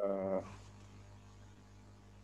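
A man's voice holding a drawn-out vowel for about half a second, then a pause with only a low steady hum and faint background noise.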